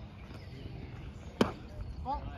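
A pitched baseball hitting the catcher's mitt: one sharp smack about one and a half seconds in.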